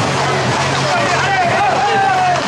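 A crowd shouting and calling out, with one long rising-and-falling cry near the end, over a steady low beat of music.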